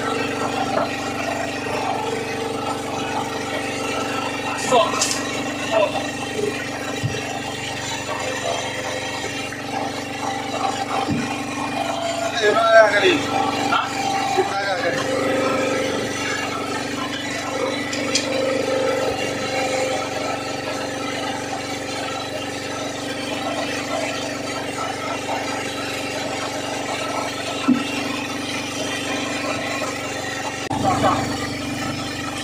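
A boat's engine hums steadily throughout. Brief snatches of voices come in around the middle, with a few light knocks.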